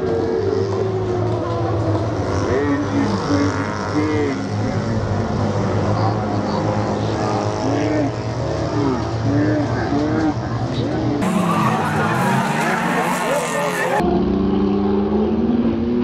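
Engines of small Yugo race cars running and revving as they pass, mixed with spectators' voices. Near the end an engine's pitch climbs as it revs up.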